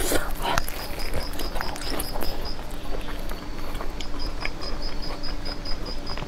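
Close-miked chewing of a roasted red chili pepper: wet mouth clicks and smacks. Behind it, a high-pitched pulsing at about five pulses a second stops for a second or so midway and then resumes.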